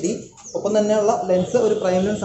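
A man talking, with a short pause a little way in.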